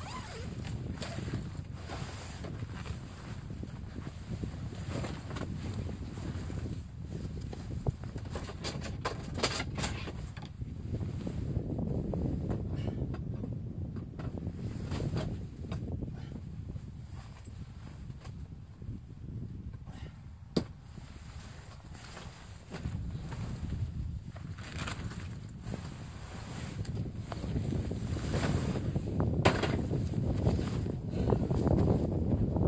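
Wind buffeting the microphone, with rustling of the ice shelter's nylon fabric and scattered clicks and knocks from its frame as it is raised; one sharp click about twenty seconds in.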